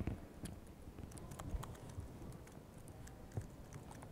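Faint, irregular keystrokes on a laptop keyboard, a scattering of light clicks.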